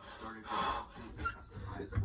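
A man's heavy, forceful breaths and gasps in short bursts while working out, with a thump near the end.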